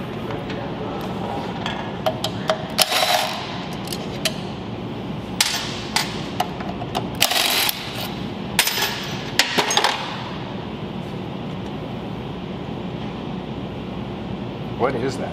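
Cordless electric screwdriver removing bolts from a ZF 8HP50 transmission's valve body. It runs in several short bursts with metal clicks and taps between them, over a steady background hum.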